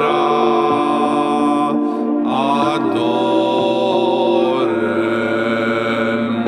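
Slow choral chant of long held notes over a sustained drone, in a gothic pagan-metal song's intro. The chord shifts about two seconds in and again near five seconds.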